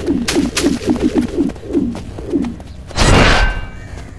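A quick run of short, falling cooing calls with a few sharp clicks among them, then a loud rushing whoosh about three seconds in.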